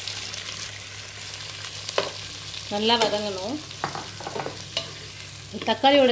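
Freshly added chopped tomatoes sizzling in hot oil in a pot, with a spatula stirring and scraping through them and a single knock about two seconds in.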